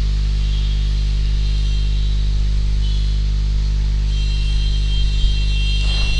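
Steady electrical mains hum in the recording: a constant low drone with a row of buzzing overtones above it, unchanging throughout.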